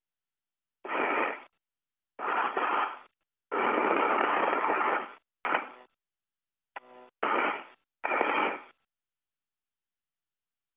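Radio-loop static: about six bursts of hiss, from half a second to nearly two seconds long, each cut off into dead silence. A short, faint beeping tone comes about seven seconds in.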